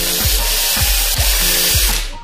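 Cordless drill-driver running steadily as it drives a screw into the metal case of an electric bike's motor controller, stopping near the end. Background music with a steady beat plays underneath.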